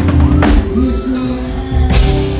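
Live pagode music from a band on stage, with drums and singing. The sound changes abruptly about half a second in and again near the end.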